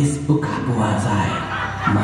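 A man's voice with chuckling laughter from the audience.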